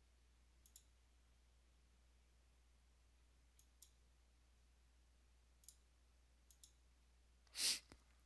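Near silence broken by a few faint computer mouse clicks, mostly in quick pairs, then a short breath near the end.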